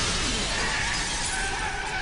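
Plate glass shattering, a dense crash of breaking glass and falling shards that thins out over the two seconds. A few steady high tones come in about a second in.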